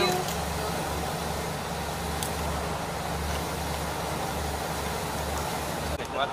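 A steady low engine hum that throbs slightly, under a constant background hiss.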